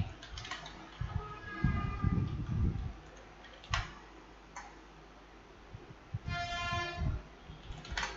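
Computer keyboard typing: scattered key clicks, with a sharper keystroke about four seconds in. A short steady tone sounds for under a second near the end.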